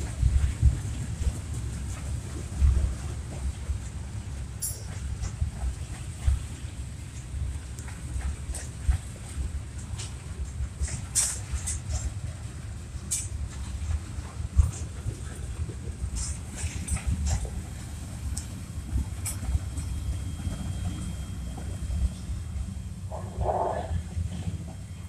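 Freight train's cars rolling past at close range: a steady, uneven low rumble with scattered sharp metallic clicks.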